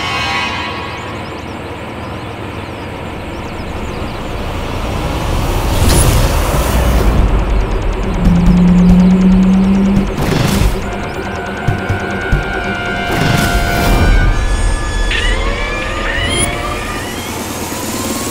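Dramatic background score with whooshing swells and a held low note about halfway through, then sweeping rising tones near the end.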